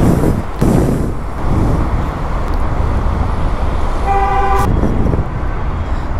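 Steady road traffic rumble, with one vehicle horn sounding briefly, for about half a second, around four seconds in.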